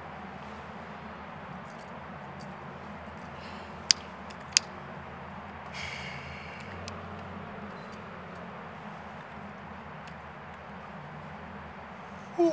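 Two sharp clicks of a cigarette lighter being flicked, a little under a second apart, then a brief hiss as the cigarette is lit, over a steady low background hum.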